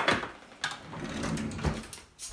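A few clicks and clatters of metal kitchen utensils being handled as a pair of tongs is fetched, with a sharp click at the start and a couple of lighter knocks after.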